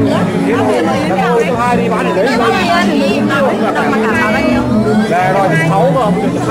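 Several people talking at once close by, their voices overlapping, over the chatter of a crowd.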